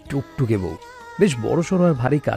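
A voice narrating in Bengali over soft background music. About halfway there is a short break in the speech where only a few held music tones are heard.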